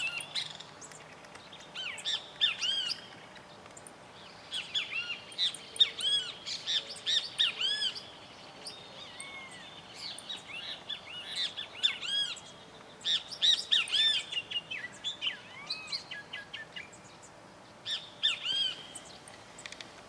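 Birds calling in the countryside: clusters of short chirping notes, each rising and falling in pitch, come and go in several bursts over a faint steady background.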